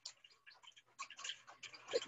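Faint, irregular short clicks, a few a second.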